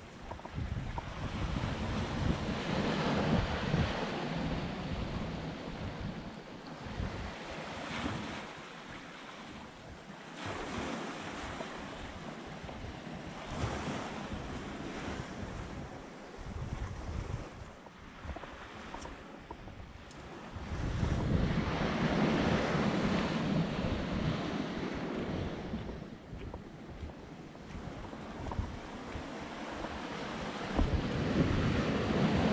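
Small waves washing up on a sandy beach and foaming around boulders, swelling louder near the start and again about two-thirds of the way through. Wind buffets the microphone with a gusty rumble.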